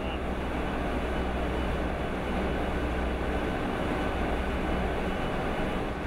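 Flour mill machinery running steadily: an even mechanical noise over a strong low hum.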